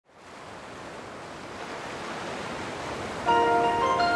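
A steady rushing noise fades in and swells, then music enters a little past three seconds in with sustained chords.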